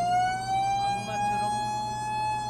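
A continuous high tone with overtones, sinking slightly and then rising slowly in pitch.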